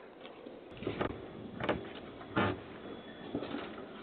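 Three dull thumps about 0.7 s apart at a front door as a man works at it, over a faint steady hiss, heard through a Ring video doorbell's narrow-band microphone.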